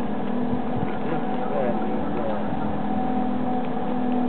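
Outdoor ambience: a steady low machine-like drone, with wind buffeting the microphone and faint snatches of people's voices.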